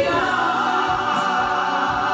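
Four male singers singing together in harmony through handheld microphones, holding long sustained notes on a new chord that starts right at the beginning.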